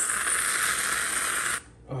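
Aerosol can of whipped dessert topping spraying onto coffee: a loud, steady hiss that cuts off suddenly about a second and a half in.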